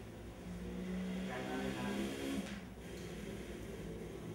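A motor vehicle's engine that swells for about two seconds in the middle and then fades, over a steady low hum.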